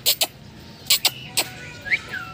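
About six sharp clicks or taps, spread unevenly, with a short bird chirp near the end that rises and then falls.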